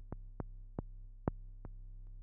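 Software synthesizer patch in Reaktor Blocks playing short, clicky percussive blips at uneven intervals, about five in two seconds, over a steady low hum. The patch is not yet giving a good pitch signal, so it sounds like a little drum sound rather than a pitched note.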